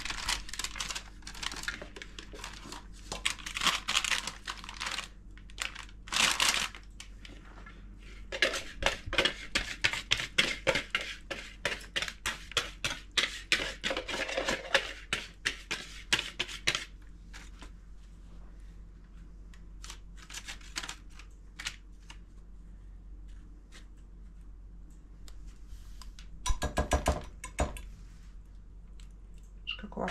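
Baking paper crinkling and a utensil scraping and clicking against a plastic mixing bowl as thick batter is scraped out into a paper-lined baking pan. The handling comes in spells: rustling at first, a long run of quick scrapes and clicks in the middle, then a brief clatter of knocks near the end.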